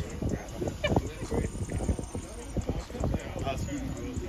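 A saddled horse stepping and shifting its hooves on packed dirt: a scatter of irregular knocks and thuds.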